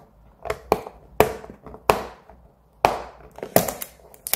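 Fingernails picking and scratching at the seal sticker on a cardboard product box, about seven short, sharp scratchy clicks at uneven intervals.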